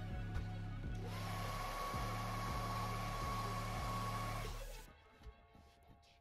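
Airbrush spraying paint: a steady hiss of air with a thin whistle, starting about a second in and stopping near five seconds, over background music with a steady beat.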